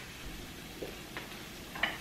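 Diced onion sautéing in olive oil in a nonstick pan over medium heat: a faint, steady sizzle, with a couple of light clicks.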